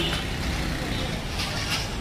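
Liver pieces frying in oil on a large steel tawa over a steady low rumble, with a brief scrape of a metal spatula on the tawa about one and a half seconds in.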